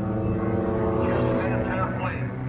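Stock car engines running at speed on a short oval track, a steady engine drone.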